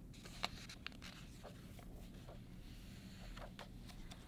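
A picture book's paper page being turned and smoothed flat by hand: faint rustling and sliding, with two sharp little taps in the first second.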